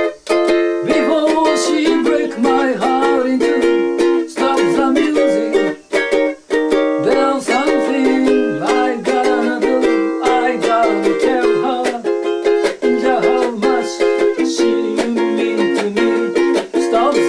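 Ukulele strummed in a steady rhythm, chords and melody ringing in a small room, with brief breaks in the strumming near the start and about six seconds in.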